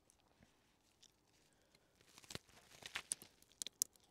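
A person biting into a burger and chewing, picked up close by a clip-on microphone: soft crunching and a few sharp clicks, starting about two seconds in.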